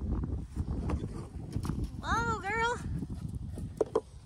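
A spooked horse's hooves thudding and scuffing on a dirt pen floor as she trots off. About halfway through comes a short two-part call that rises and falls, and there are a couple of sharp knocks near the end.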